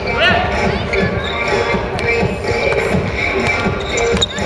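Music with basketball court sounds underneath: sneakers thudding and squeaking on the wooden gym floor, and the ball bouncing. One sharp sneaker squeak comes about a quarter of a second in.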